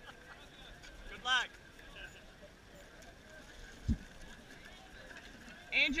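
Faint open-air background among rowing crews. A single short shout comes about a second in, a low thump a little before four seconds, and a man starts calling out right at the end.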